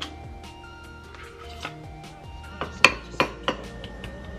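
A metal spoon knocking against a ceramic bowl while yogurt is scooped in: about four sharp clinks close together, a little over halfway through, with the second the loudest. Background music plays throughout.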